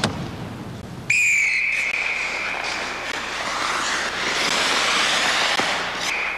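Referee's whistle blown in one long, steady blast about a second in, stopping play after a player is hit into the boards, over arena crowd noise that swells toward the end.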